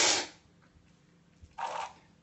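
A loud, short slurp of coffee from a cupping spoon, sucked in hard with air so the aromas reach the nose. About a second and a half later comes a short spit into a cup.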